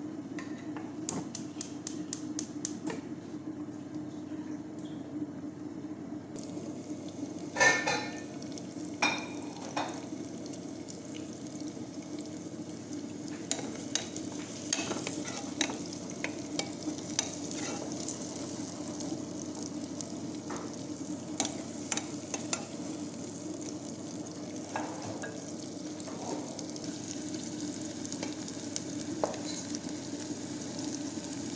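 Diced onions frying in hot oil in a nonstick pot, sizzling steadily while a wooden spatula stirs and scrapes them. The sizzle starts about six seconds in with a loud clatter as the onions go into the oil, after a quick run of clicks near the start.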